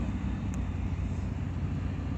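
Ford Explorer heard from inside the cabin while driving: a steady low rumble of engine and road noise.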